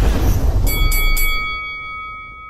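Logo sting sound effect: a deep rumbling whoosh fading away, then three quick metallic strikes in the first second or so and a bright bell-like ding that rings on.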